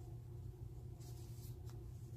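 Faint scratchy rustling of a metal crochet hook pulling cotton yarn through stitches, in short bursts about a second in, over a steady low hum.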